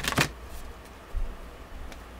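A deck of Moonology oracle cards being shuffled by hand: a quick riffle of the cards at the start, then softer handling of the deck with a low thump about a second in.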